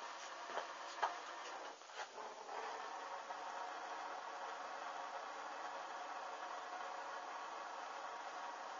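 A few light clicks and knocks, then a steady whirring hiss from a small hand-held electric blower, starting about two and a half seconds in.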